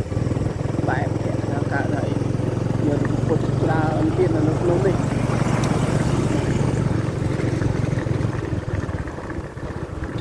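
A small motorcycle engine running steadily, a low hum that fades near the end, with people's voices over it.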